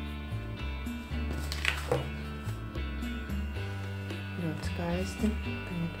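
Background music with guitar and a steady bass line; a woman's voice begins near the end.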